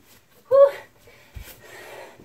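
A woman's short, loud exertion sound about half a second in, then a low thump as her feet land during a burpee.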